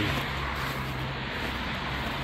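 Steady hiss and low hum of distant road traffic, with no single event standing out.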